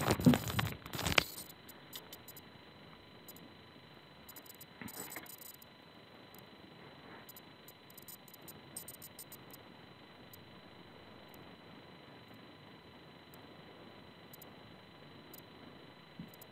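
Kitten playing with a handled toy: a burst of rustling and crackling in the first second or so, then faint, scattered light taps and scratches.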